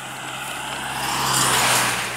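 A car passing on the road, its tyre and engine noise swelling to a peak about one and a half seconds in and then fading.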